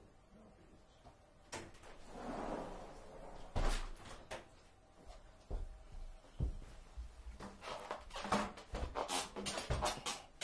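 Scattered knocks, thumps and handling noises of a person moving about a room. It is quiet for the first second and a half and gets busier toward the end, as he comes back to his seat.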